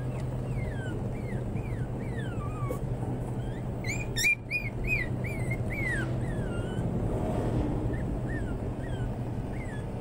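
Puppies whimpering, a string of short, high whines that fall in pitch, with a quick burst of louder yips about four seconds in. A steady low hum runs underneath.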